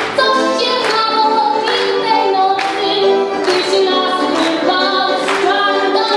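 A young woman sings a Polish Christmas carol (kolęda) over piano accordion accompaniment.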